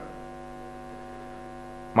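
Steady electrical mains hum, a buzz made of many even, unchanging tones, carried through the podium microphone's sound chain.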